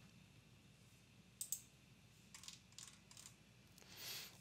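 Near silence broken by a few faint computer mouse clicks: one about a second and a half in, then a small scattered run of clicks a second later.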